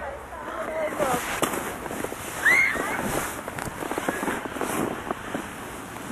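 Irregular crunching and scraping in packed snow, with a child's short high squeal about two and a half seconds in and children's voices in the background.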